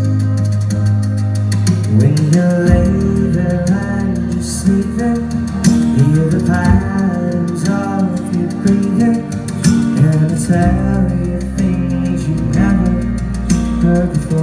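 Live acoustic guitar playing a slow song, over held low bass notes that change every few seconds.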